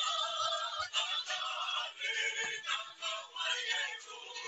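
A recorded song with singing plays through a video call's audio, its top end cut off.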